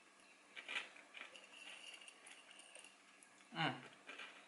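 Faint rustling, light clicks and crunching as spiced bran flakes are picked up from a dish and eaten, with a short vocal sound, like a hum, about three and a half seconds in.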